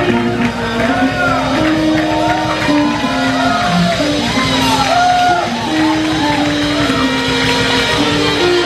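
A small jazz band playing live in a club. A melody of held notes steps up and down over bass and drums, with voices rising over it.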